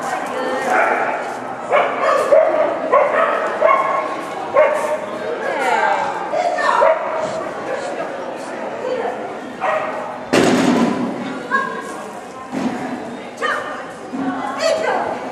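A dog barking repeatedly in short barks while running an agility course, with one loud thump about ten seconds in.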